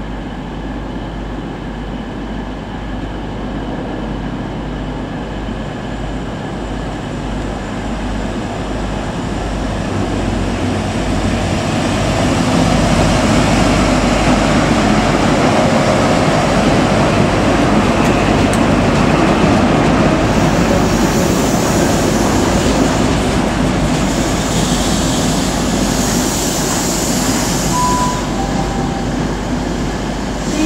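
Class 43 HST power car's MTU diesel engine drawing closer and louder as the train pulls into the platform and runs past close by. About twenty seconds in, the coaches' wheel and rail noise takes over as a brighter rushing sound, with a brief faint squeal near the end.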